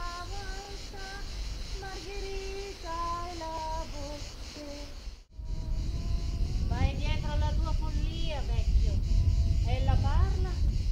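A high voice singing a slow melody in short held notes; after an abrupt cut about five seconds in, the voice goes on with swooping, sliding notes over a low rumble.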